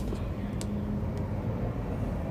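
Steady low rumbling background noise with a faint hum, broken by two faint light ticks about half a second and a second in.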